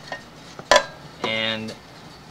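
A single sharp click about two-thirds of a second in, with a fainter tick just before it.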